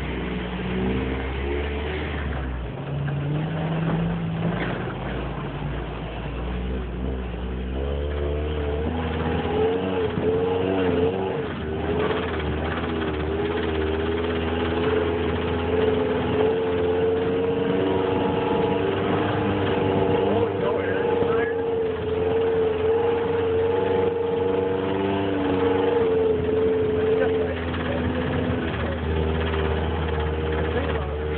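Off-road 4x4 engine running under load while driving up a snowy trail. Its note climbs about eight to ten seconds in, then holds a steady pitch.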